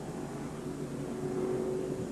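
Race cars' engines running at the track, a steady, fairly faint drone with no single car standing out.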